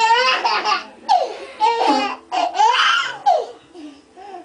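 A baby of about ten months laughing in several bursts, one after another.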